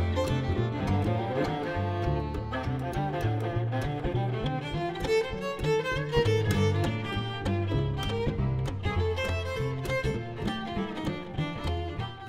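A string quartet of two violins, viola and cello playing jazz, with the cello holding a low line that moves note by note about every half-second under the violins' melody.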